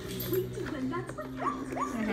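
A young child's whiny vocalizing, its pitch sliding up and down, with two quick upward slides in the second half.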